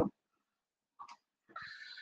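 A pause in a man's talk: his word ends right at the start, a short faint mouth click comes about a second in, and a quiet in-breath follows near the end before he speaks again.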